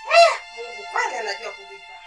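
A woman's short, crying vocal outbursts over sustained background music: one loud wavering cry just after the start and a weaker one about a second in.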